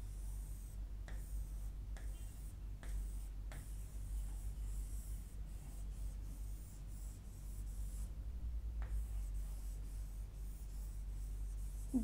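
Pen drawing on an interactive whiteboard screen: faint scratchy strokes with a few light taps, most of them in the first few seconds, over a low steady hum.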